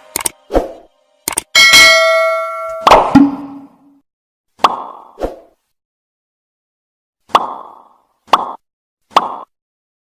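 A string of short pop sound effects, about a dozen in all, separated by dead silence, with a brief chime ringing out about two seconds in.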